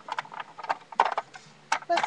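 Small plastic Littlest Pet Shop figures clicking and knocking against a plastic toy playhouse as they are handled, a quick string of sharp taps with louder knocks about a second in and near the end.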